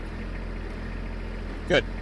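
Compact tractor engine running steadily, powering the sidedresser's hydraulics.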